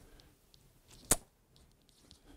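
A single sharp click about a second in, against an otherwise quiet room.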